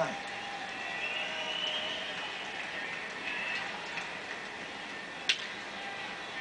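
Ballpark crowd murmur from a baseball broadcast, played through a TV speaker, with one sharp crack of the ball at home plate about five seconds in.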